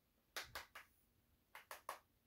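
Eyeshadow brush tapping against the eyeshadow palette: two quick sets of three light taps, about a second apart.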